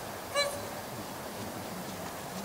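A single short, sharp voice command about half a second in, typical of a handler's heel cue that starts the dog off in heelwork. It sounds over a steady outdoor wind hiss.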